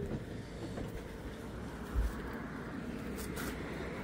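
Low, steady background rumble with a single dull thump about two seconds in.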